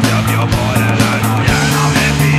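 Fast punk rock song with guitar and drums, the drums hitting about four times a second; the bass note steps up about one and a half seconds in.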